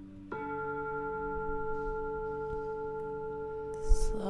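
Slow ambient background music of sustained bell-like tones, like a singing bowl. A new note rings in about a third of a second in and holds steady. Just before the end comes a brief low thump.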